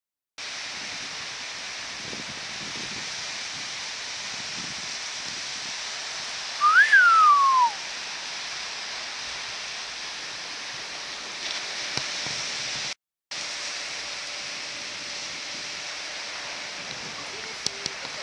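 Steady hiss of surf and wind, with one loud whistled note about seven seconds in that rises briefly and then slides down over about a second. The sound drops out to silence briefly twice.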